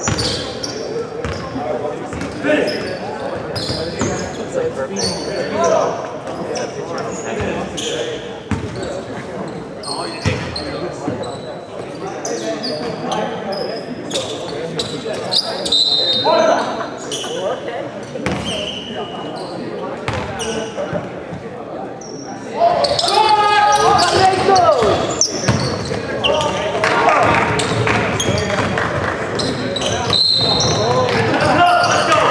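Echoing gym noise at a pickup-style basketball game: voices of players and onlookers, a basketball bouncing on the hardwood floor, and short high sneaker squeaks. The noise gets clearly louder about two-thirds of the way in, when play is under way.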